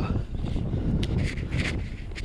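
Wind buffeting the microphone in open country, a steady low rumble, with a few brief rustles about a second in.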